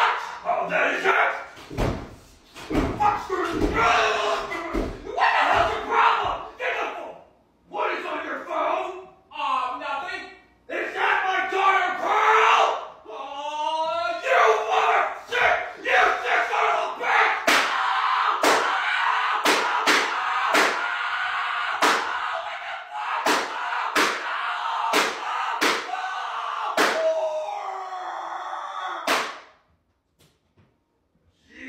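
Shouted cartoon-voiced argument, then a long stretch of continuous yelling broken by repeated sharp smacks, about one or two a second, that cuts off abruptly near the end.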